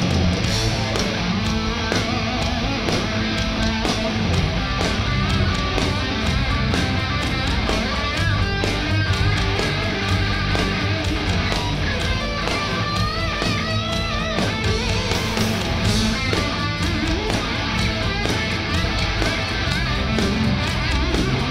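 A punk-rock band playing live without vocals: electric guitar, bass guitar and drum kit at a steady loud level, with a high wavering melody line through the middle.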